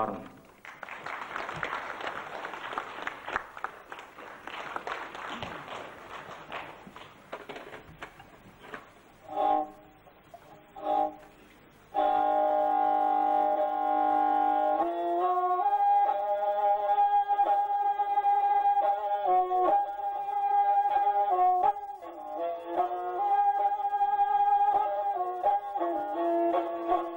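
Audience applause, then, after a couple of short notes, a kobyz starting abruptly about twelve seconds in. It plays a kui in long sustained bowed notes, rich in overtones, stepping from pitch to pitch.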